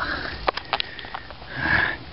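A person sniffing through the nose, once at the start and again near the end, with a few short handling clicks in between.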